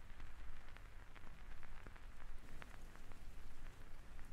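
Quiet steady hiss of rain with many scattered individual drops ticking on a hard surface.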